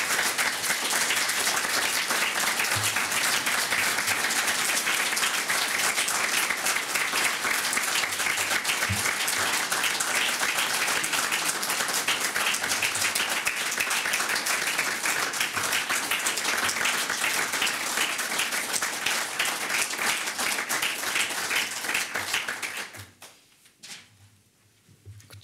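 Audience applauding, a dense, steady clapping that goes on for over twenty seconds and dies away shortly before the end.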